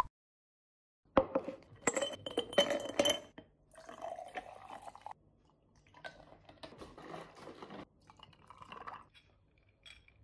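Glass clinking and knocking in a large glass mason jar of ice and coffee, with a brief ringing, starting about a second in. It is followed by two stretches of liquid being poured into the jar.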